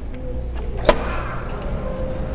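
A single sharp click about a second in, over a steady low outdoor rumble picked up by a body-worn camera.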